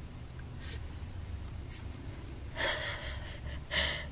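A baby's two breathy gasps or huffs: a longer one about two and a half seconds in and a short one near the end, over a low steady hum.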